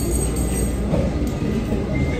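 Steady low rumble of restaurant room noise, with faint voices in the background and a faint thin whine.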